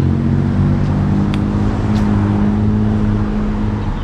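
Steady low hum of a motor vehicle engine running nearby, with a slightly higher tone joining about halfway through and dropping away near the end.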